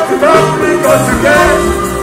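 Live concert music: male vocals sung into a microphone over a backing band, heard through the PA.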